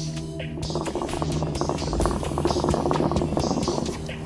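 Hookah water bubbling as a man draws on the hose: a rapid, irregular gurgle starting about half a second in and lasting about three seconds. It plays over background music with a sustained drone.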